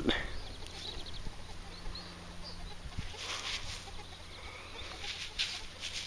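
Faint outdoor background with a few short, high bird chirps and occasional rustles.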